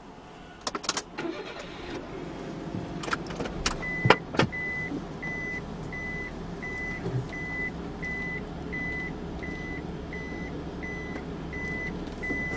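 Car engine running at idle inside the cabin, with a few clicks early and a clunk about four seconds in. From there the car's reverse warning beeps steadily, about twice a second, while it backs out.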